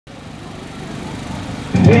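Low steady motor hum with outdoor background noise, fading in. A loud voice cuts in near the end.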